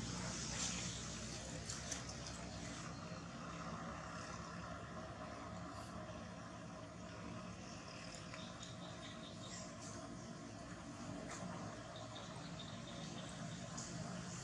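Faint, steady outdoor background noise with a low hum and a few small clicks; no clear animal call stands out.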